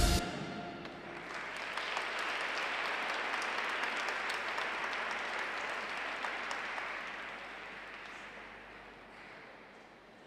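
Program music cuts off at the very start, then a small audience in the ice rink applauds, swelling about a second in and fading away over the last few seconds.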